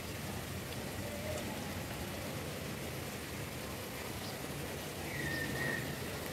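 Steady rain falling. A brief high tone sounds about five seconds in.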